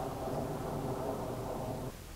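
Steady, quiet engine hum in the background, even throughout, with no sharp sounds.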